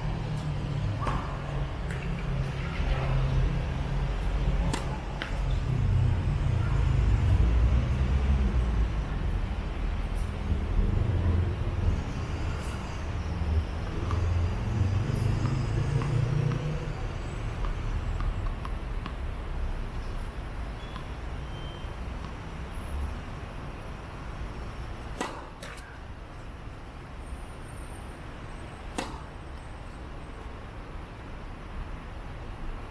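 Sharp knock of a tennis ball struck by a racket on a serve, with a few more single ball knocks later. Under them a low engine-like rumble swells over the first several seconds and dies away about halfway through.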